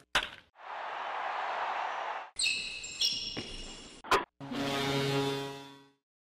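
Outro jingle built from sound effects. A sharp hit is followed by a swelling whoosh and two bright chime notes a little over half a second apart. After a click, a held low musical chord fades out near the end.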